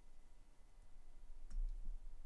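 Plastic Lego Technic parts clicking as a pin with axle is pushed into a part by hand, with a few faint clicks and a soft knock about one and a half seconds in.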